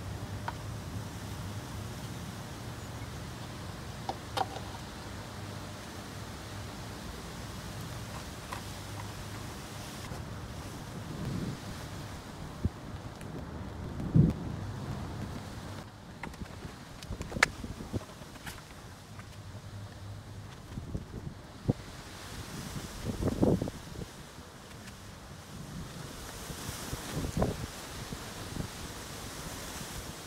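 Steady rain and wind noise, with a few sharp knocks and clunks from tools and the oil jug being handled in the engine bay. The loudest knock comes about 14 seconds in.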